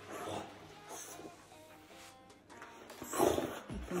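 A French bulldog makes a short vocal sound about three seconds in, over soft background music.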